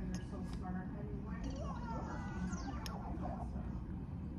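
Faint voices with gliding, squeaky pitch from a video playing on a laptop, over a steady low room hum.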